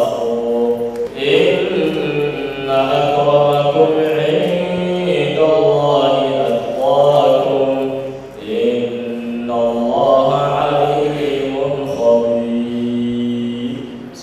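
A man's voice chanting in long, drawn-out melodic phrases, with short pauses between them.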